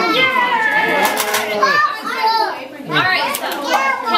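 Young children's high-pitched voices, several talking and calling out over one another while playing.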